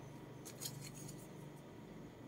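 Faint handling noise: a few light clicks in the first second as a hand takes hold of a leather bag's paper price tag, over a low steady hum.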